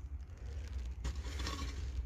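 Faint scraping and rustling, handling noise around a small glass bottle held in a gloved hand, over a steady low rumble; the rustling grows a little about halfway through.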